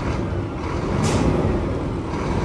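Scania bitruck engine idling with a steady low rumble, and a short hiss of compressed air from the truck's air system about a second in.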